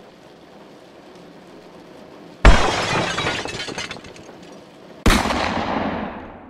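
Two sudden loud crash sound effects, like something smashing and breaking: the first about two and a half seconds in, dying away over a second or so, the second about five seconds in and fading out. Before the first crash there is only a faint hiss.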